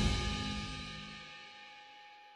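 Soundtrack music dying away: the tail of a loud hit rings on with a few held tones, fading steadily toward silence.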